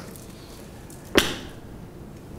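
A single sharp knock about a second in, over quiet room tone.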